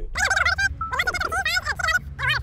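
High-pitched, cackling laughter in quick repeated pulses, about four a second.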